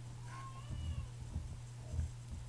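A short, high-pitched call lasting under a second, its pitch wavering and falling, over a steady low hum, followed by a few soft low bumps.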